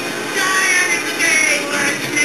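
Music with a singing voice.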